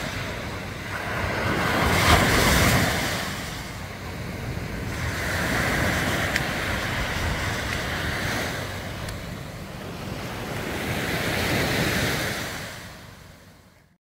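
Small sea waves breaking and washing up a sandy beach, the surf swelling and ebbing three times. The sound fades away near the end.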